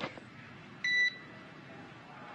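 A single short electronic beep, one steady tone about a third of a second long, about a second in, over faint hiss: the keying tone of a mission radio loop, like the one that opened the transmission just before.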